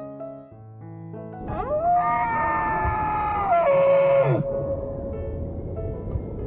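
Soft piano notes, then about a second and a half in a single long animal call lasting about three seconds. It rises at the start, holds its pitch, steps down, and falls away at the end.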